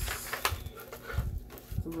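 Thin plastic bag rustling and crinkling in short bursts as a small plastic steering-wheel controller attachment is handled and pulled out of it, with a few soft knocks.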